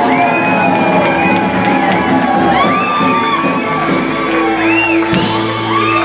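Live band playing loudly, with sung vocals over the instruments and the crowd whooping and shouting; from about halfway through, the band holds a long final chord over a sustained bass note.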